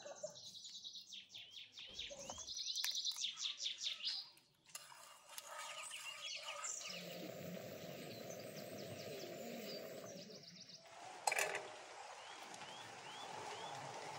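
Small birds singing and chirping for the first few seconds. After a sudden cut, a steady background hiss with scattered chirps continues. About eleven seconds in comes a short knock as an enamel pot is set down on an iron grill.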